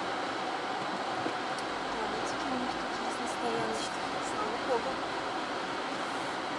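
Steady in-cabin noise of a car moving slowly at low speed, its engine and tyres a constant hum, with faint brief snatches of voices in the middle.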